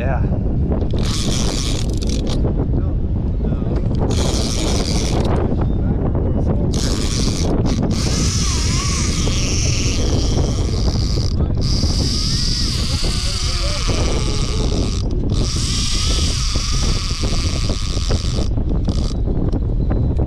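Conventional saltwater reel being cranked in spells, a bright whirring from the reel that starts and stops about eight times, each spell lasting one to three seconds. Steady wind rumble on the microphone runs underneath.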